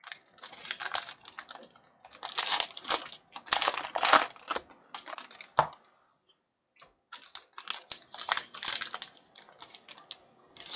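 Plastic wrapper of a 2020 Topps Heritage baseball card pack crinkling as it is handled and worked open, alongside the rustle of cards being handled. The crinkling comes in bursts, with a pause of about a second in the middle.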